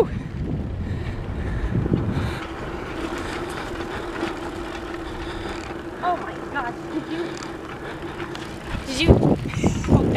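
Riding noise from a bicycle on a rough dirt road: wind on the microphone and tyres rolling over the dirt, rumbling most in the first couple of seconds. A steady hum runs through the middle seconds.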